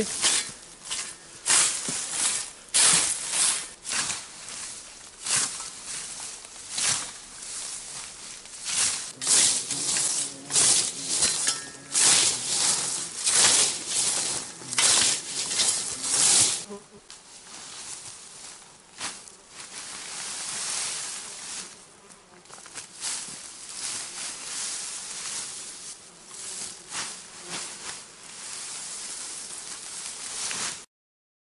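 Old hand scythe's blade swishing through tall grass and weeds in repeated strokes, about one or two a second, then softer, quieter swishing and rustling from about seventeen seconds in.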